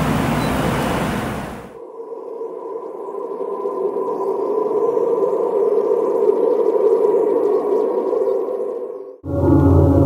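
Eerie ambient drone that slowly swells, with faint high gliding squeals over it, following a steady outdoor background noise in the first two seconds. About nine seconds in it cuts off abruptly and music with a heavy bass begins.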